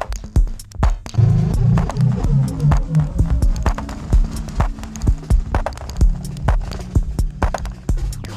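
Minimal techno (microhouse) track: a steady drum-machine kick about twice a second with clicking percussion. A low, stepping bass figure comes in about a second in and fades back after a couple of seconds.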